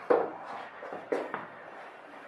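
Soft knocks and rustling of handling as a patient's leg and foot are moved on a padded treatment table: one sharper knock at the start, then two lighter ones a little over a second in.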